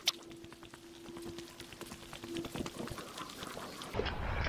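Footsteps on a woodland path covered in dry fallen leaves, a quick irregular run of soft crunches, with a sharper click just after the start. A faint steady hum fades out about three seconds in.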